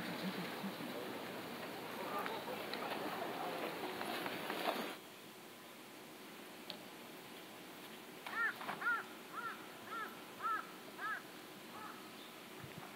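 A murmur of voices for the first five seconds, cut off suddenly. Then, near the end, a bird gives a quick series of about seven short calls.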